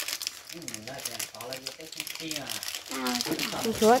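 Thin plastic snack packet crinkling as it is squeezed and shaken empty onto a plate. Voices talk over it, louder near the end.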